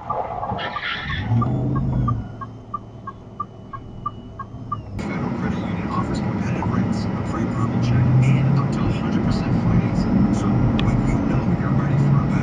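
Road and engine noise inside a moving car, with a light ticking about twice a second through the first five seconds. About five seconds in the sound cuts to a louder, rougher road noise that builds toward the end.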